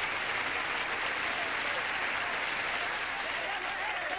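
Studio audience applauding, a steady clapping throughout; voices start to come through near the end.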